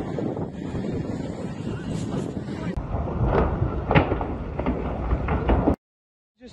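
Wind buffeting a phone microphone outdoors, with indistinct voices and a few sharp knocks in the second half; the sound cuts off shortly before the end.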